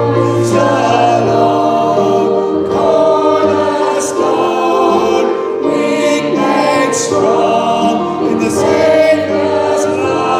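A congregation singing a hymn together, in held notes that change every second or so.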